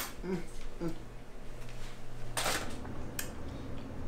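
A woman's short closed-mouth "mm" hums in the first second, then a brief loud hissing burst about two and a half seconds in and a small click just after.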